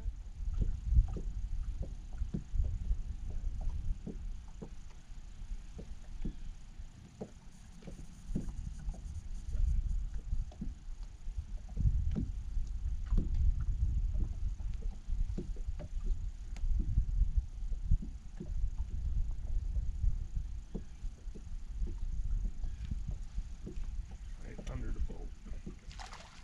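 Wind rumbling on the microphone of a boat on open water, with small slaps of water against the hull scattered through it.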